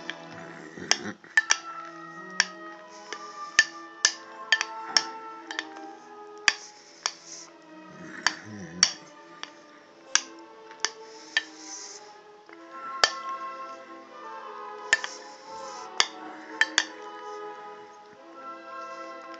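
Metal spoon clinking against a glass bowl again and again while cereal and milk are eaten, sharp ticks at irregular intervals. Music with long held notes plays underneath throughout.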